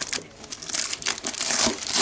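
A cardboard box being torn open by hand: cardboard and tape being peeled and pulled apart, crinkling and scraping, growing louder in the second half.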